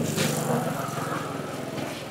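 Small motorcycle engine running at low revs close by, a steady low drone with a fast, even pulse.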